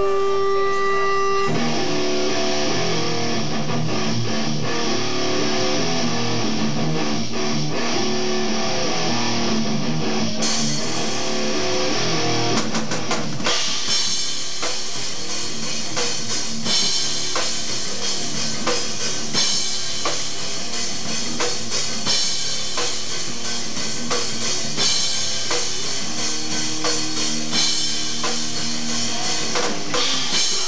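Live rock band playing loud amplified electric guitar and a drum kit. The guitar plays alone at first; cymbals come in about ten seconds in and the full drum beat a few seconds later.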